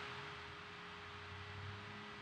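Faint room tone: a low steady hum with a thin, steady higher tone over a soft hiss.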